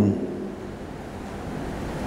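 Steady whooshing noise of an electric fan running, with a faint steady hum underneath.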